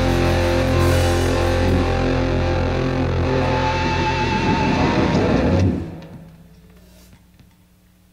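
Rock band playing live with distorted electric guitar and bass, the song ending on a held final chord that stops a little past halfway through. A faint steady low hum is left after.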